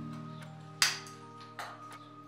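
Hand pop-rivet tool setting a rivet through a metal hinge: the mandrel snaps off with one sharp crack about a second in, followed by a smaller click. Steady background music plays underneath.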